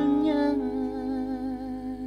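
A male singer holding one long note with vibrato that fades away near the end, over an acoustic guitar chord left ringing and slowly dying away.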